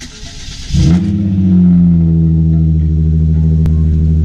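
Cold start of a Hyundai Genesis Coupe's 3.8-litre V6. The starter cranks for under a second, then the engine catches with a short rise in revs and settles into a steady idle. There is a single click near the end.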